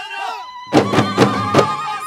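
An Ahidous troupe's chanted singing breaks off, and under a second in their large frame drums (bendir) start being struck together in a quick rhythm, about four beats a second. A high wavering voice is held over the drumming.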